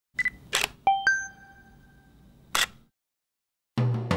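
Camera sounds: a short beep, a brief shutter-like click, then two sharp clicks that ring out as a bright metallic ping, and a second shutter-like burst. A moment of silence follows, then music starts near the end.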